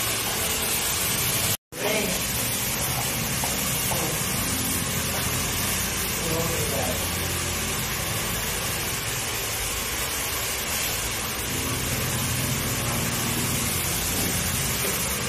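Steady rushing hiss with faint voices under it, dropping out for a moment about a second and a half in.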